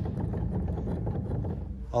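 Keys of a 1994 Yamaha U1 upright piano played in silent mode: a quick run of soft knocks and clicks from the keys and hammer action, with no piano tone, because the silent system stops the hammers short of the strings.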